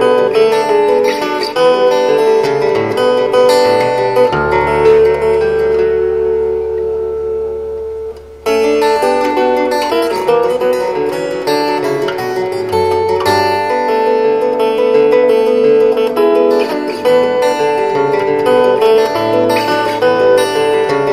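Steel-string acoustic guitar played fingerstyle: bass notes under a plucked melody. About four seconds in, a chord is held and left to ring, fading away until the picking starts again suddenly a little past the middle.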